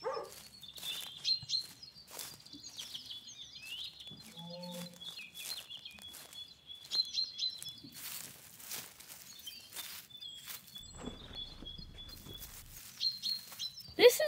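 Small birds chirping and singing outdoors, with scattered clicks and rustling of grass as hands work at the ground, and a louder rustle about eight seconds in.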